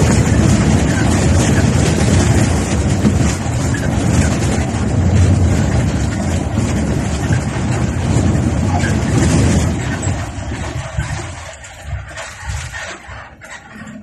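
Engine and road noise of a moving coach bus heard from the driver's seat, a loud, heavy rumble that fades markedly after about ten seconds.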